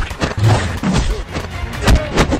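Action-film soundtrack music overlaid with several sharp punch and hit sound effects from a fist fight, the loudest hit near the end.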